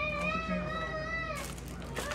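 A baby fussing: one long, wavering whine that stops about a second and a half in.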